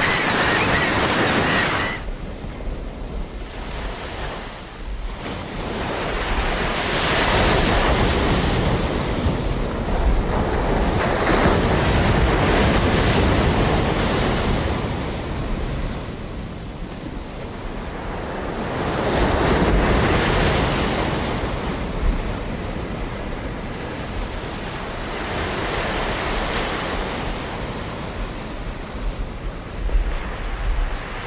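Ocean surf on a beach: a rushing noise that swells and fades as waves come in, every several seconds.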